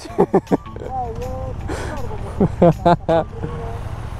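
KTM 890 parallel-twin motorcycle engines idling at a standstill, a steady low rumble under short bits of men's talk and laughter.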